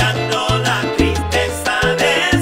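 Charanga-style salsa music in an instrumental stretch without singing: a bass line and Latin percussion keep a steady pulse under wavering melody lines.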